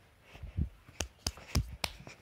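Handling noise on a hand-held phone: a few dull low thumps about half a second in, then four sharp taps in quick succession through the second half.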